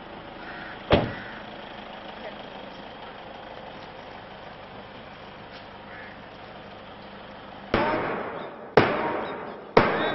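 A car door shuts with a single sharp thump about a second in, over steady outdoor background noise. Near the end a loud, regular beat starts, about one stroke a second, each stroke with a short voice-like call, keeping time for a mass drill exercise.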